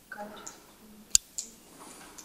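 A single sharp click a little over a second in, followed by a fainter click, over a faint, low murmur of a voice.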